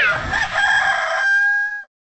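A rooster crowing, used as the sound effect for an animated logo: one long held crow that dips in pitch and cuts off suddenly shortly before the end.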